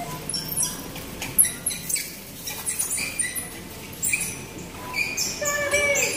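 Plastic packaging and carrier bags crinkling and rustling as items are handled at a store self-checkout, heard as a string of short squeaks and crackles.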